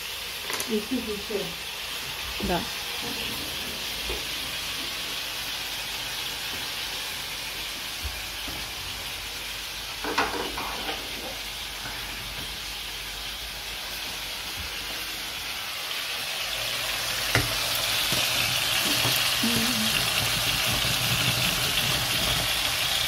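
Steady sizzling hiss of cooking on a lit gas stove, with a pot of rice boiling; the hiss grows louder over the last several seconds. A few soft knocks and brief murmurs of voice come through on top.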